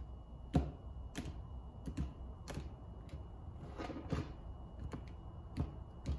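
A deck of round tarot cards being shuffled by hand: irregular short clicks and taps of the card stacks, roughly two a second.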